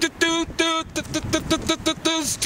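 A man's voice, talking or vocalising in a quick run of short syllables, a couple of them held.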